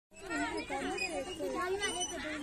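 Several children's high-pitched voices chattering and calling out over one another.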